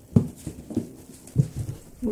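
A cat's paws thumping as it jumps off a cardboard box and runs: about five soft, low thumps in two seconds, the first the loudest.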